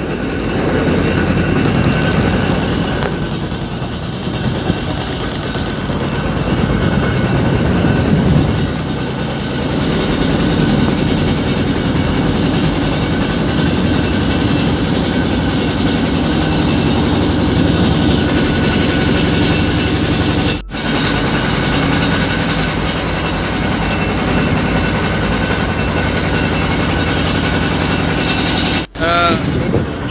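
Motorboat engine running steadily, heard from on board. It cuts out twice for a moment, about two-thirds of the way through and again near the end.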